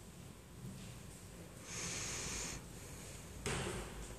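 A person breathing out hard through the nose: one hissing breath lasting just under a second, about two seconds in, and a shorter one near the end.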